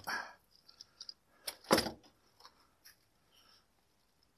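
Scattered light clinks and knocks of a metal bar clamp being taken off and set down on a wooden workbench while a straw broom is handled, with a louder knock about a second and a half in.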